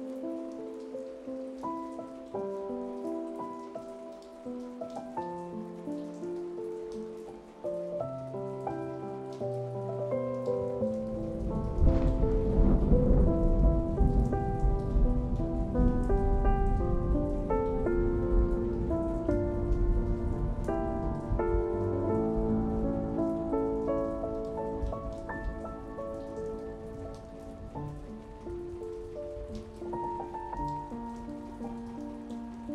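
Slow, soft solo piano playing over steady falling rain. About eleven seconds in, a deep roll of thunder swells, loudest about a second later, and slowly dies away under the piano.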